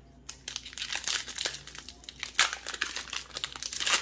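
Foil wrapper of a Magic: The Gathering Jumpstart booster pack crinkling and tearing as it is ripped open by hand. The crinkling starts about a third of a second in and goes on in irregular crackles.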